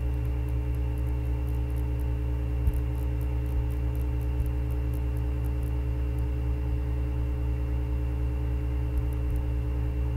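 Steady electrical hum with several held tones, as on a screen-recording's microphone, with a few faint clicks now and then.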